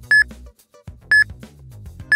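Workout interval timer counting down the last seconds of an exercise round: short high beeps, one each second, two in all, over background music with a steady beat.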